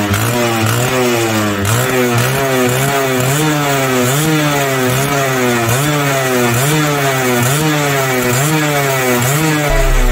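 Suzuki RGV 120 (Xipo) two-stroke single-cylinder engine being revved in quick repeated throttle blips, its pitch rising and falling about once every second.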